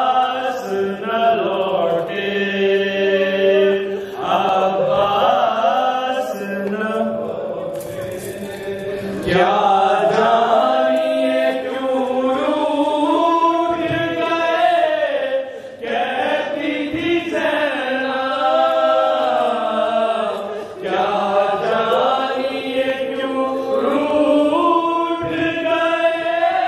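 A man reciting a noha, a Shia mourning lament, through a microphone. He chants it in long held lines that slide up and down in pitch, with short breaks between phrases.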